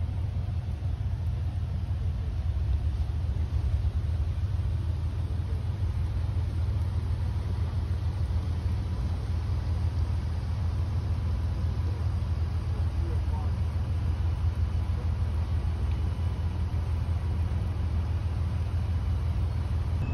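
A steady, unbroken low rumble with a faint hiss above it.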